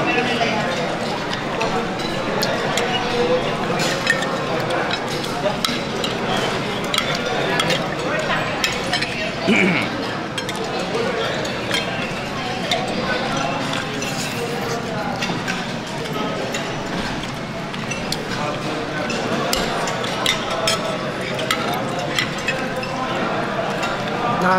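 Cutlery clinking against plates, many short scattered clinks, over steady background chatter of diners.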